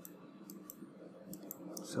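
A few faint, sharp clicks, about five over two seconds, spaced unevenly.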